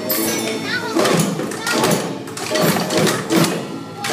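A group of young children's voices over hand percussion (drums, tambourines and bells) struck in a steady beat.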